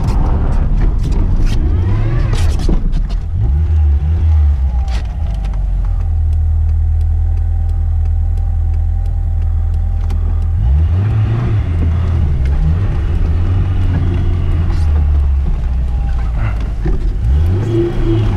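Classic Lada Zhiguli's four-cylinder engine, heard from inside the cabin, pulling hard on a loose snowy track. Its pitch rises and falls with the throttle, holding steady for a few seconds in the middle and swinging up and down twice in the second half. Sharp knocks and clatters from the car over the rough surface come in the first few seconds.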